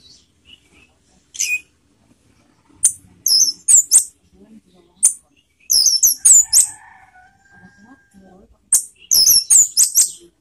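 Orange-headed thrush singing in short bursts of sharp, high-pitched notes, grouped in three quick clusters with single notes between.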